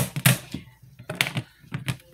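Several light, sharp clicks and taps of hard clear plastic as a clear acrylic drawer unit holding washi tape rolls is handled.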